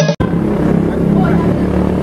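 Background music cuts off abruptly just after the start, giving way to outdoor street noise: a steady low hum of road traffic with faint voices in the background.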